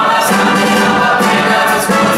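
Mixed choir singing, accompanied by a big band.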